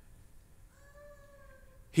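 Near silence: room tone, with one faint high-pitched sound lasting about a second near the middle.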